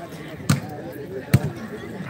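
Two sharp slaps of hands on a volleyball, about a second apart, the second louder: a serve being struck and then taken by the receiving side. Low crowd voices run underneath.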